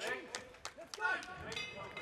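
Ring bell ringing about one and a half seconds in, a steady metallic tone that marks the end of the final round, over shouting voices and arena noise.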